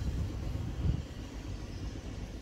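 Low, steady rumble of the sailboat's outboard motor running in gear, holding the boat against the dock on its spring line.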